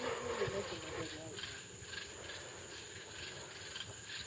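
Crickets chirping faintly at night in a steady rhythm, about two chirps a second. Low murmured voices can be heard during the first second or so.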